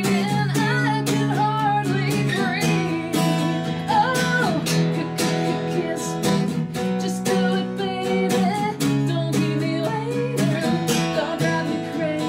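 A woman singing a melody while strumming her own acoustic guitar in steady chords, a live solo performance.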